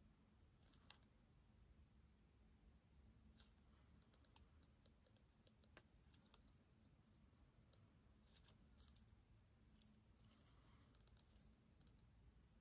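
Near silence: room tone with a faint low hum and scattered faint small clicks, most of them bunched between about four and six seconds in and again near the end.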